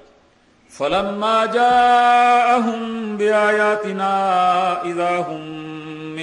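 A man's voice reciting a Quranic verse in Arabic in the melodic, chanted style of tilawat, holding long sustained notes. It starts about a second in, after a brief pause.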